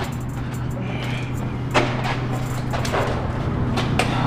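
Steady low hum with a few sharp knocks and scuffs of feet on a concrete floor during fight choreography footwork, the clearest knock a little under two seconds in.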